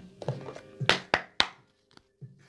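Tarot cards being handled on a table: three sharp taps in quick succession about a second in, over quiet background music.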